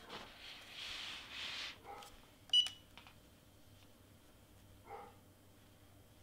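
A soft scuffing rustle as a Cricut EasyPress heat press is set down on a paper cover sheet, then a single short high-pitched electronic beep from the press about two and a half seconds in as its pressing timer is started.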